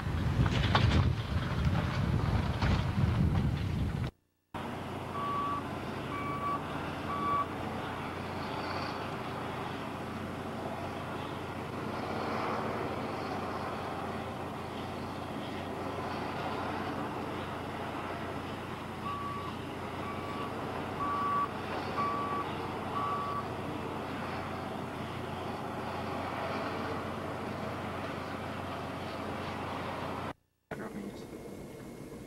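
Heavy construction machinery running steadily, with a back-up alarm beeping about once a second: three beeps a few seconds in, then five more later on. It opens with a few seconds of louder low rumble before a brief cut.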